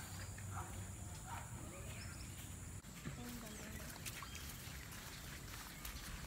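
Faint rural outdoor ambience with a few short, scattered bird chirps over a low background hum.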